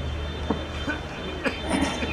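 Handheld microphone being handled as it is passed from one person to another: a couple of sharp knocks, about half a second and a second and a half in, over a steady low hum.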